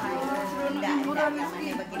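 People's voices talking, with some drawn-out vowel sounds.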